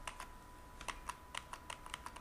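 Faint keystrokes on a computer keyboard: about nine short, irregular clicks, coming faster in the second half, over a faint steady high tone.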